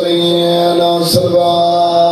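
A man's voice chanting a long held note, steady in pitch, breaking off briefly about a second in with a quick breath and then held again.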